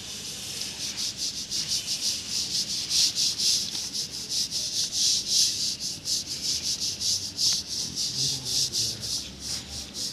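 Stiff-bristled hand brush scrubbing wet cement plaster in rapid, even strokes, washing off the surface mortar to expose the aggregate for a washed-aggregate finish.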